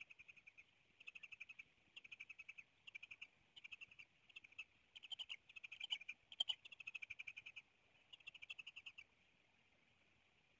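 Bald eagles chittering: a faint series of short bouts of rapid high-pitched notes, about ten notes a second. The calling stops about nine seconds in.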